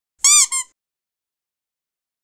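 A short, high-pitched squeaky sound effect for a logo intro, in two quick notes. Each note arches up and then down in pitch, the first longer than the second.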